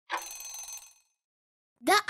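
Quiz countdown timer's end signal: a single electronic bell-like ring lasting under a second, marking time up. A voice starts speaking right at the end.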